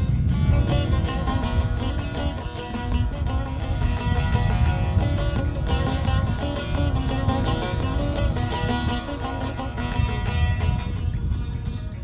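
Two bağlamas (long-necked Turkish saz) strummed together in a quick, steady rhythm. This is the instrumental opening of an aşık folk song, before the voice comes in.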